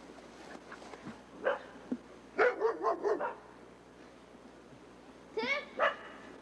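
A dog barking in short runs: a single yelp, then a quick string of about five barks, and two more near the end.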